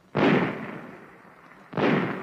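Thompson submachine gun fired semi-automatic: two single shots about a second and a half apart, each dying away slowly in a long echo.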